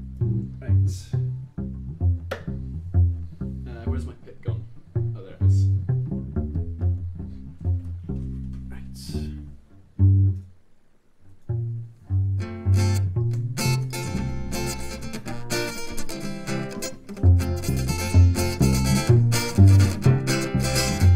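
Acoustic guitar picked one note at a time on the low strings, then after a brief pause strummed in full chords from about twelve seconds in.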